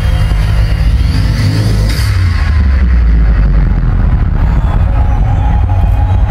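Loud, deep rumbling show-intro sound played over a concert hall's sound system, with rising engine-like glides and one sharp hit about two seconds in.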